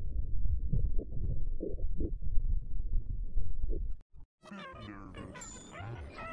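Heavily filtered, bass-boosted audio effect that sounds muffled and pulsing. It cuts out suddenly about four seconds in. After a short gap, a quieter, brighter pitched sound starts that wavers up and down like a warped voice.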